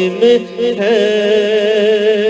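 A voice singing an Urdu manqabat (devotional poem), drawing out a line and then holding one long wavering note from about a second in, over a steady low drone.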